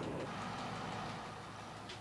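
Diesel-electric train of the Circumetnea railway rumbling along the track, heard from the front of the train as it runs through a tunnel; the noise slowly grows quieter.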